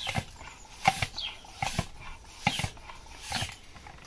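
Bicycle floor pump worked in steady strokes, about five in four seconds, each stroke a short rush of air. It is inflating a punctured inner tube so the leak can be found.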